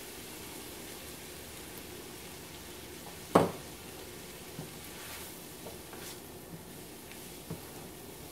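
Diced onions and garlic sizzling gently in melted butter in a skillet, over lowered heat, while flour is added. One sharp clink about three seconds in, with a few faint ticks later.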